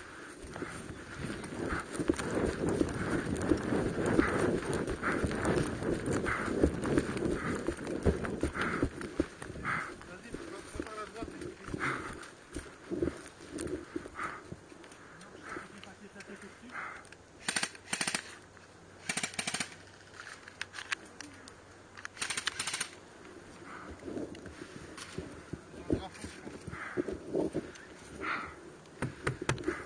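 Footsteps over grass in a steady rhythm, then three short bursts of automatic airsoft gunfire, each a rapid string of shots, about two-thirds of the way through.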